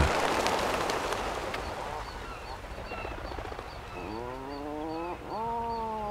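Surf washing against sea cliffs, fading over the first couple of seconds, with faint regular high chirps. Then a seabird gives two long honking calls, the first rising in pitch and the second held and slightly falling.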